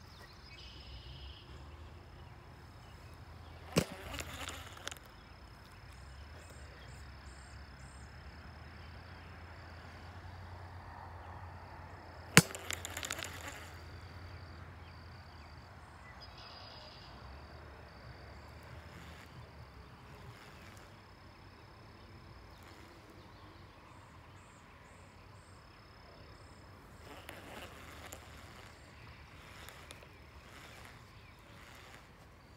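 Baitcasting rod and reel being cast twice: each time a sharp click is followed by about a second of rushing noise. Behind it is a quiet outdoor background with a faint steady high tone and a few faint chirps.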